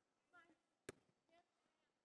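Near silence in a large hall, with faint far-off voices and one sharp knock of a volleyball being struck about a second in.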